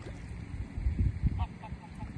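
Greylag geese giving a few short honks, most of them in the second half, over low rumbling buffets on the microphone that are loudest around the middle.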